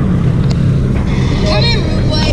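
Motorcycle engine running steadily with a low, even hum, with a voice calling out briefly about a second and a half in.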